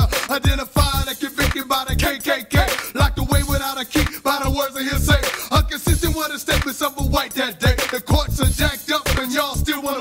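Hip-hop song: a man rapping over a beat with a steady kick drum.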